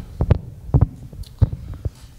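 Handling noise from a handheld microphone: a run of irregular dull thumps and bumps, about eight in two seconds.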